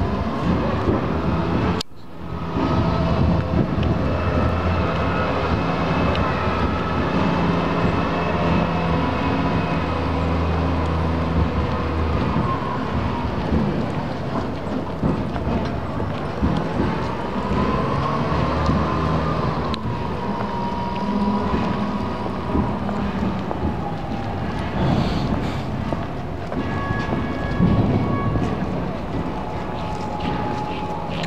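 Wind buffeting the microphone over a steady low engine hum. The sound briefly cuts out about two seconds in.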